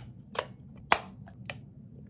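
Sharp plastic clicks from a Deluxe M618C vertical wireless mouse being handled while batteries are put in: three main clicks about half a second apart, the loudest about a second in.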